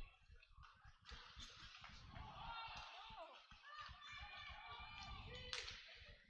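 Faint hockey rink ambience: distant voices from the rink and a few dull low knocks, with no commentary over it.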